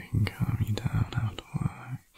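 A man speaking softly and close, low-pitched, in short phrases, with a few sharp mouth clicks between syllables.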